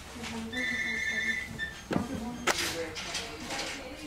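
Low, indistinct voices, with a steady high-pitched tone held for about a second starting about half a second in, then two sharp knocks around the middle.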